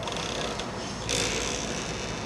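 Cloth rustling and rubbing close to the microphone, loudest from about halfway through: a scraping hiss without any tone.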